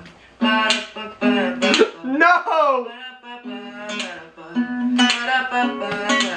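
Acoustic guitar strummed in chords, with sustained chord tones ringing between the strokes. Around two seconds in, a voice slides down in pitch over the guitar.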